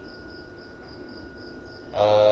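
Cricket chirping quietly in the background, a high chirp repeating about four times a second, over a faint steady high tone.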